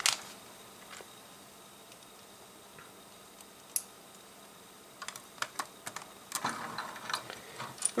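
Small plastic clicks and taps of LEGO pieces being handled on a table: one click at the start, another about halfway, then a run of quick clicks in the last three seconds.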